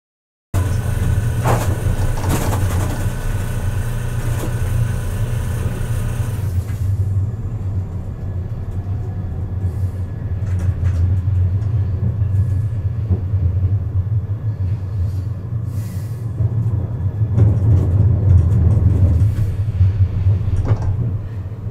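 Siemens Avenio low-floor tram running, heard from inside the driver's cab as a steady low rumble. The sound cuts out completely for about half a second at the start, and the higher hiss thins out about six seconds in.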